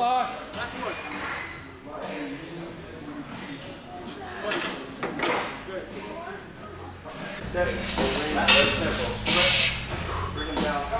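Men's voices in a gym, with a lifter groaning and breathing hard between reps and indistinct talk around him. About seven and a half seconds in, the background becomes a steady gym hum, and a loud breathy hiss follows near the end.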